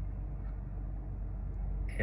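BMW E90 3 Series engine idling steadily after a fresh start, a low steady hum heard from inside the cabin.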